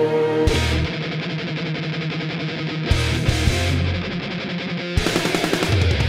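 Power metal instrumental: a held soft chord gives way about half a second in to distorted electric guitars and drums, and the band plays fuller with busier drums and cymbals near the end.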